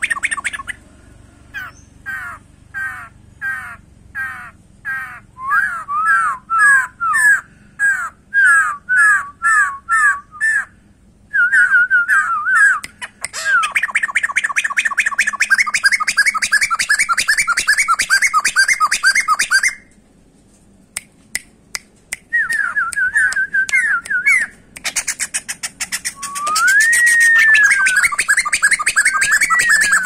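Caged laughingthrush (poksay) singing loudly: a run of repeated slurred whistled notes about two a second that speeds into a long, fast chattering trill. After a short break with a few clicks it trills again, with one long rising-and-falling whistle near the end.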